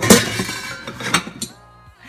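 Nested mixing bowls clinking and scraping against each other as a large glass bowl is pulled out of the stack. There is a sharp clink at the start, rattling for about a second, and another clink about a second in.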